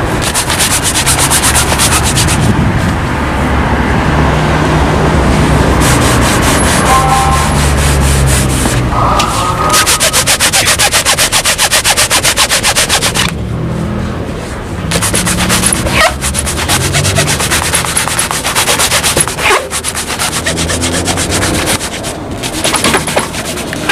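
Cloth rag rubbed fast back and forth over a black leather shoe, buffing it to a shine, in quick rhythmic strokes.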